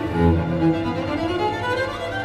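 Cello and orchestral strings playing dense, overlapping bowed lines. A low note sounds near the start, and several string pitches glide upward through the middle.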